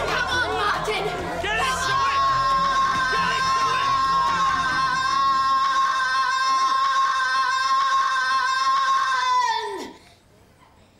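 A crowd shouting and cheering on an arm-wrestling bout. From about two seconds in, one long high note is held steadily over them, then drops sharply in pitch and cuts off just before the end.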